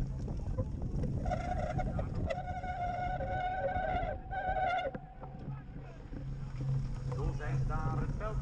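Rumble and wind noise on a cyclocross rider's action camera as the bike runs over grass. A steady high-pitched tone is held from about a second in for roughly three and a half seconds, with a short break near the end of it.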